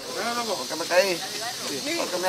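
People's voices talking in short, broken phrases over a steady hiss of background noise.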